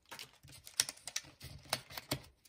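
Cardstock and die-cut paper pieces being handled and shuffled on a cutting mat: light rustling with a few sharp clicks and taps at uneven intervals.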